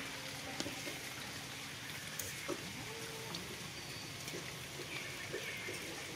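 Steady rain on wet paving, with a few short, thin calls from macaques: one about halfway through and a couple of short high glides near the end.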